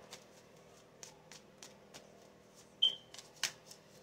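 Faint handling of tarot cards: a scatter of soft clicks and flicks, with two sharper snaps about three seconds in.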